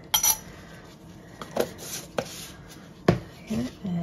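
Metal spoon clinking against a small glass jar and a plastic dye tub as dye powder is spooned out: a few separate sharp taps, the loudest about three seconds in.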